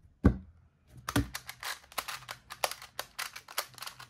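Qiyi Rubik's Clock being speedsolved: a rapid, uneven run of small plastic clicks as its pins are pushed and its dials turned, following a single knock just after the start.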